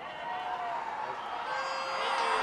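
Stadium crowd noise swelling with shouting and cheering as the ball goes up for a catch and the first wicket falls. It grows steadily louder.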